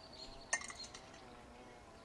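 A sharp clink of kitchenware being handled on a wooden table about half a second in, followed by a few lighter taps.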